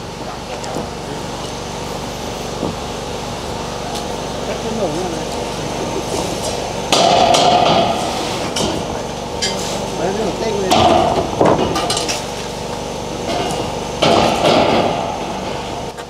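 Steel roof purlins knocking and scraping against each other and on a concrete-block wall as they are handled. The metal clanks come in three loud bouts in the second half, each a second or two long.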